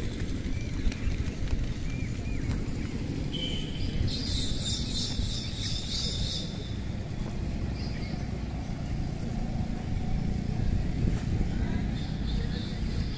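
Outdoor field ambience dominated by a steady low rumble of wind on the microphone. About four seconds in comes a high, shrill buzzing that lasts a couple of seconds.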